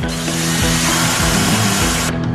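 A power drill boring into wood, running steadily for about two seconds and stopping abruptly at the end, over background music with steady sustained notes.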